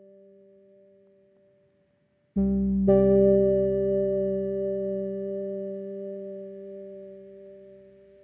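Soft background piano music: a faint held tone fades out, then after a short gap a low piano chord is struck about two and a half seconds in, a higher note joins half a second later, and they ring on, slowly dying away.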